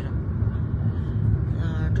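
Steady low rumble of a passenger train running, heard from inside the carriage.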